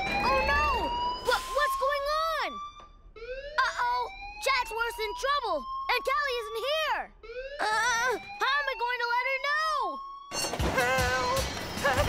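Cartoon soundtrack: a siren-like tone slides slowly upward in pitch and restarts three times, each rise lasting two to three seconds, under music with wavering, swooping notes. About ten seconds in, this gives way to a louder, busier stretch of music.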